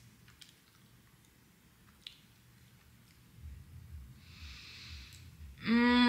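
A person quietly chewing a mouthful of natto, sticky fermented soybeans, with a couple of faint clicks and a breath through the nose. Near the end comes a loud, steady hummed "mmm" as she tastes it.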